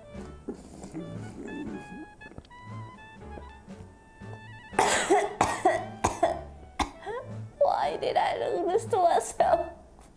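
A woman coughing and sputtering in loud, irregular bursts with strained vocal cries, starting about five seconds in, from milk sniffed up her nose off a spoon. Light background music plays underneath.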